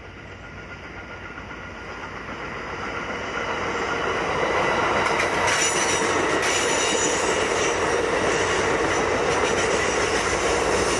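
Amtrak Capitol Corridor passenger train of bi-level cars approaching and passing close by. The rumble of wheels on rail grows over the first four or five seconds, then holds at a steady loud rush with a few sharp clicks as the cars go past.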